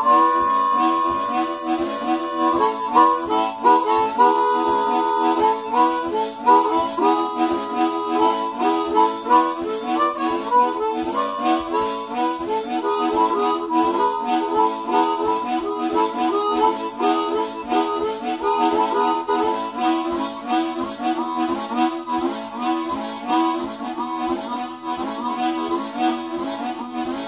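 Two harmonicas played together in an improvised duet: a continuous stream of quick, short notes, opening with a longer held note.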